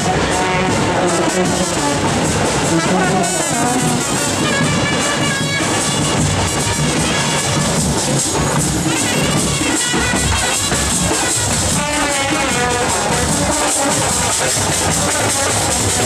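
Marching brass band playing a tune on trumpets and a sousaphone, loud and unbroken.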